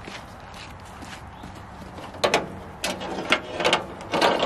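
Faint footsteps, then from about halfway a cluster of sharp metal knocks and clinks as the tractor's air-line glad hands are picked up and knock together.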